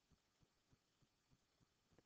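Near silence: room tone with very faint low ticks, about three a second.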